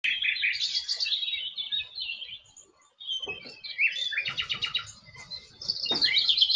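Birds chirping and trilling in quick high calls, with a brief pause about halfway through and a fast rattling trill near the end.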